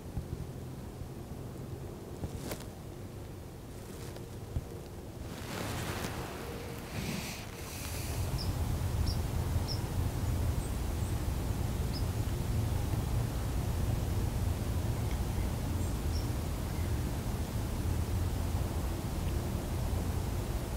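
Outdoor ambience at dusk: a steady low rumble that grows louder about eight seconds in, with a few soft clicks early on and a few faint, short high chirps.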